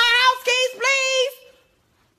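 A woman's high-pitched voice in drawn-out, sing-song phrases on fairly level notes. It ends about a second and a half in.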